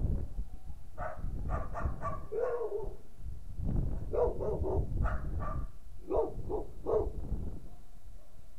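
A dog barking in two runs of short barks, the first about a second in and a longer one from about four seconds in, over wind rumbling on the microphone.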